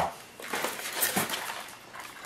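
Handling noise of unpacking: hands rustling through plastic-bagged accessories and picking up a small cardboard box, with a brief faint pitched sound about a second in.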